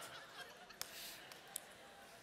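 Quiet room tone with two faint, brief clicks, the first a little under a second in and the second about a second and a half in.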